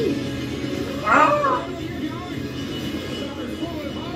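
Movie trailer soundtrack with music playing, and a loud wordless exclamation from a man about a second in.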